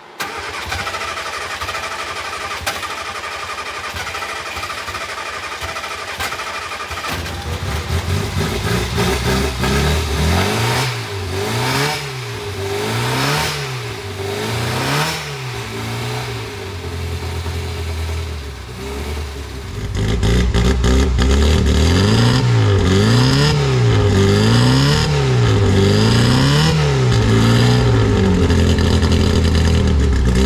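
Austin-Healey Sprite race car's four-cylinder engine running from a cold start: it runs steadily at first, then about seven seconds in is revved in repeated throttle blips, about one every second and a half. It gets louder about twenty seconds in.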